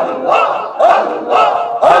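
Group dhikr: many men's voices chanting 'Allah' in unison, a steady rhythm of about two chants a second.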